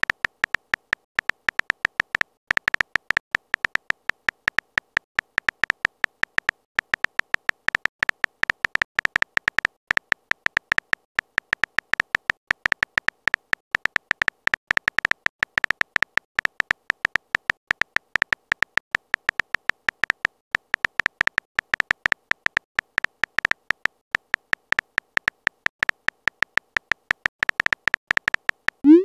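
Phone-keyboard typing clicks: a rapid, even run of short tapping clicks, about ten a second, one per letter as a long text message is typed.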